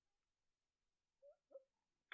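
Near silence: room tone, with two very faint brief chirp-like blips about one and a half seconds in.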